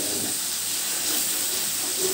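Blended spice paste frying in hot oil in a wok, giving a steady, even sizzle.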